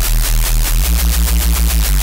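Heavy neuro-style reese bass from the Serum synthesizer: two slightly detuned sine waves with noise layered on top, driven through Serum's tube distortion into a loud, gritty bass. The detuning makes it pulse about six times a second, and the bass note changes about a second in and again near the end.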